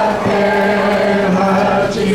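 Voices singing a slow religious hymn in unison, with long held notes.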